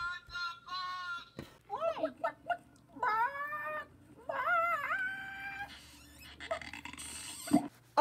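A high, squeaky voice making squawking, cat-like cries: a few short squeaks in the first second, then longer rising-and-falling wavering calls.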